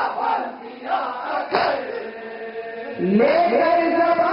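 Mourners' chest-beating (matam): two heavy hand slaps about a second and a half apart, with a group of men's voices chanting between them. About three seconds in, a male reciter starts singing a noha through a microphone, his voice sliding up into held notes.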